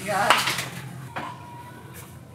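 A young child's brief high-pitched vocal sound, followed about a second later by a single light knock.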